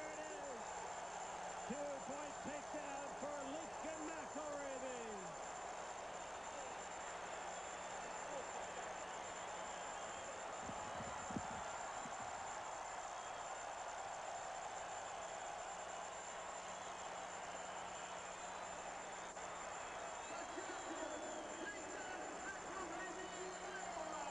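Large arena crowd cheering and shouting, with single yells standing out in the first few seconds and a low thump about eleven seconds in. Under it runs a steady hum from the poor-quality old TV recording.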